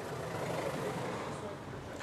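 Steady vehicle noise, an even rumble and hiss that swells a little and then eases off.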